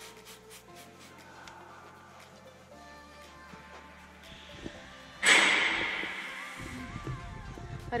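A trigger spray bottle of leather cleaner gives one sharp spritz about five seconds in, a loud hiss that dies away over a second or so. Quiet background music plays throughout.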